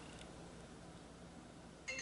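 Quiet room tone, with a faint ringing, chime-like tone starting suddenly near the end.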